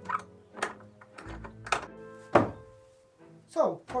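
About four wooden knocks and thunks as barn boards are handled, over background music with sustained tones.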